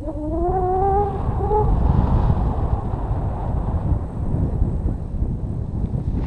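Wind rushing over the microphone of a descending paraglider. Near the start a person gives a drawn-out cry of about a second and a half that rises slightly in pitch.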